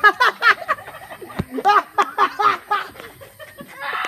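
A person laughing in two runs of short, quick "ha" bursts, each falling in pitch, with a brief pause between the runs. A single sharp pop comes about a second and a half in.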